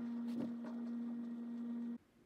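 A steady low hum with a couple of faint clicks, cutting off suddenly at the end.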